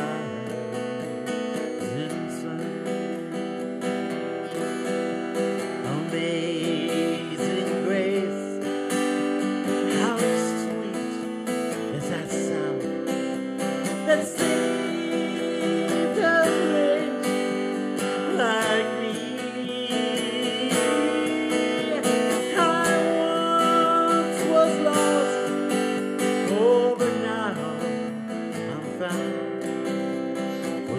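Steel-string acoustic guitar strummed steadily, with a man singing over it.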